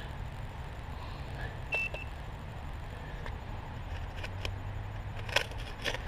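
Hands handling dug soil and dry fallen leaves, with a few light clicks and crackles, the sharpest a little before the end. A single short high beep sounds about two seconds in.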